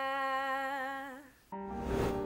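A woman's voice holds one long sung note that wavers near its end and fades out about a second and a half in. Then a whoosh and the start of instrumental theme music.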